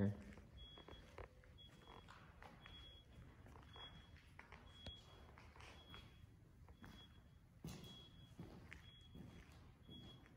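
Faint electronic alarm beeping in the building, one short high-pitched beep about once a second.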